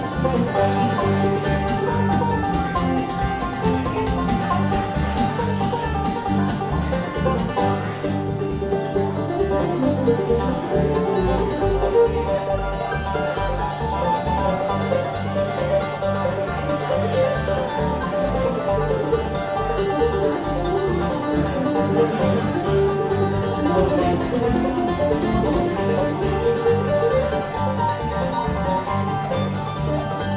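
Bluegrass band playing a tune on banjo, mandolin, acoustic guitar and upright bass, the bass keeping a steady beat under the picked banjo.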